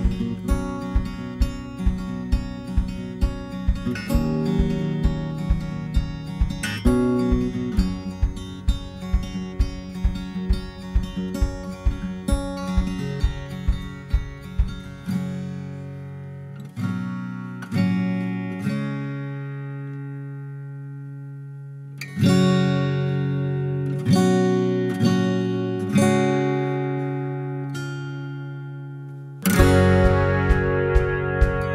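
Background music: an acoustic guitar instrumental with a steady picked rhythm that thins out about halfway into a few ringing chords, then comes back strongly just before the end.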